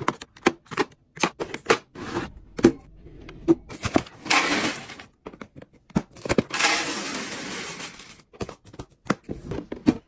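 Plastic snack cups and containers clicking and knocking as they are set down and handled, with two longer stretches of dry rustling, the sound of cereal flakes being poured into a plastic storage container, about four seconds in and again from about six and a half to eight seconds.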